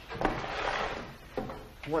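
A wooden sash window is pulled down: a sliding rub lasting about a second, then a knock as it shuts.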